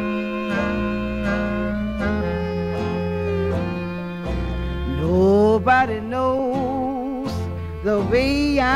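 Jug band playing a slow blues, with held melody notes over a steady beat; a sliding, wavering melody line comes in about five seconds in.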